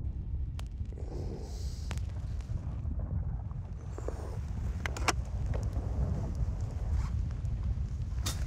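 A low, steady rumbling drone of ambient film sound, with a few faint sharp clicks and rustles scattered through it.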